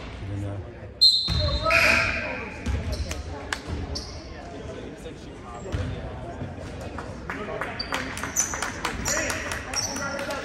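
Basketball game sounds in a large gym: the ball bouncing on the hardwood floor, short high sneaker squeaks and players' and spectators' voices, with a sharp loud sound about a second in.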